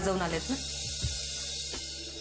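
A woman's line of speech ends about half a second in, then a long hissing cymbal-like swell, a dramatic sound effect, spreads over a low steady background-music drone.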